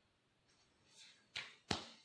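A soft rustle, then two sharp clicks close together, the second the louder, against a quiet room.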